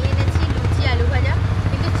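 Steady low diesel engine rumble, with a fine even pulse, from a road roller working close by on the road, under a woman's talking.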